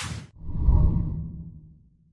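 Logo-intro sound effect: a short whoosh, then a deep low rumble that swells about half a second in and fades away over the next second or so.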